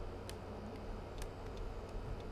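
Three faint ticks about a second apart, a stylus tapping on a drawing tablet while numbers are handwritten, over a low steady hum.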